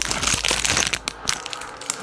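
Clear plastic packaging bag crinkling as it is handled, a quick irregular run of small crackles.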